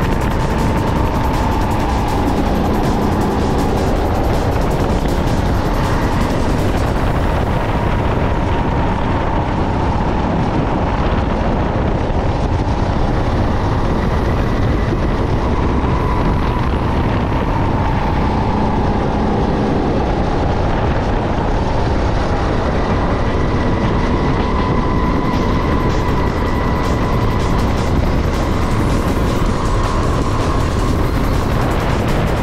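Sodi SR5 rental go-kart's engine running hard through a lap, its pitch gently rising and falling with the corners over a steady rush of road and wind noise.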